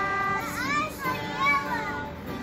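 A young child's high-pitched voice: a held note at the start, then quick rising and falling calls, the loudest about a second and a half in.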